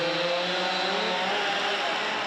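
Gas chainsaw engine running steadily, its pitch wavering up and down a little.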